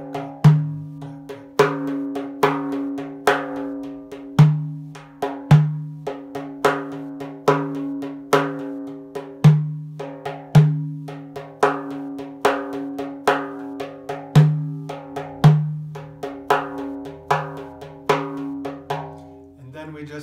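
Hand-played frame drum playing a 9/8 Karşılama rhythm: pairs of deep, ringing dum strokes followed by runs of quicker, higher tak strokes with a double-left fill. The cycle repeats about every five seconds.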